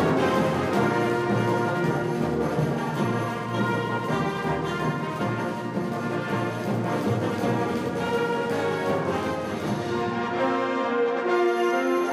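Wind band music, with the brass section of trumpets and trombones to the fore over a full ensemble. The lowest bass drops out about a second and a half before the end.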